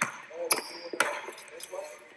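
A basketball dribbled on an indoor court: sharp bounces about half a second apart, the clearest two near the start, under faint voices.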